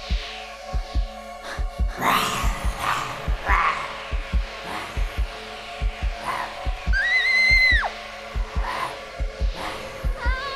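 Horror film soundtrack: a low heartbeat-like pulse of double thumps, about one a second, under tense music, with rasping creature growls and a high held cry lasting about a second near three quarters of the way through.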